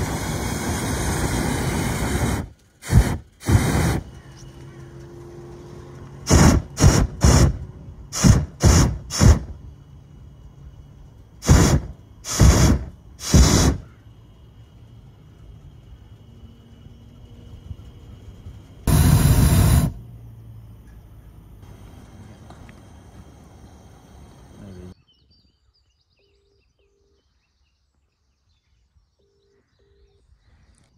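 Hot air balloon's propane burner firing: one long blast of about two and a half seconds, then groups of short blasts, and one more blast of about a second later on.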